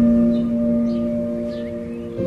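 Calm meditation music: a bell-like tone in the manner of a singing bowl is struck at the start and rings on, slowly fading, over a held lower note. Faint short high chirps sound in the background.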